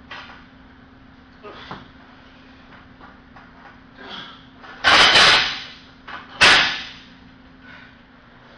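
A lifter's forceful breaths and grunts while pressing a barbell overhead. There are a few short, softer exhales, then two loud effortful ones just past the middle, each cut short and fading off.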